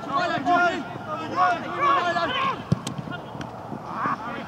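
Men's voices shouting across an open football pitch during play, loudest in the first half, with one sharp thump about two and three-quarter seconds in.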